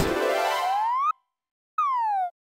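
Comic cartoon sound effect: a tone slides up in pitch for about half a second and cuts off. After a short silence it slides back down.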